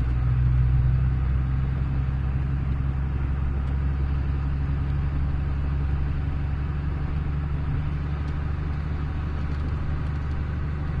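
Vehicle engine and road noise heard from inside the cabin while driving, a steady low drone, slightly louder about a second in.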